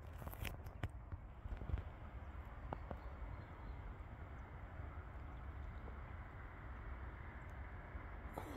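Quiet outdoor ambience by still water: a low steady rumble with a few faint clicks and taps in the first second or so.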